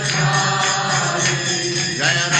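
Devotional music: a mantra chanted by voices over a steady low drone.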